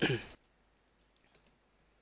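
A few faint computer keyboard keystrokes, clustered about a second in.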